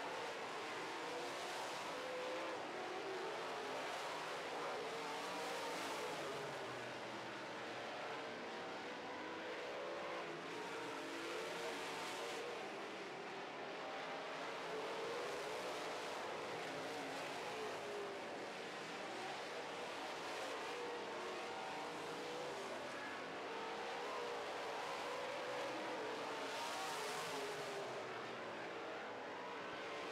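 Several dirt modified race cars with V8 engines running laps together. Their engine notes overlap and rise and fall continuously as the cars go around the track.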